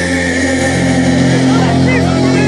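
Rock band live on stage holding a sustained chord, the electric guitar and bass ringing on steadily, with whistles and shouts from the crowd starting over it near the end.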